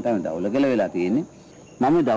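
A man speaking in Sinhala, pausing briefly for about half a second shortly after the middle.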